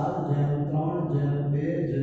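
A man's voice speaking in long, drawn-out, sing-song syllables, close to a chant.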